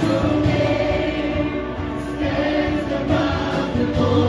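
Live worship music: a group of singers singing a contemporary worship song together over electric guitar and keyboard.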